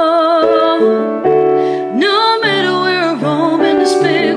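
A woman singing with vibrato over sustained piano chords that change every second or so.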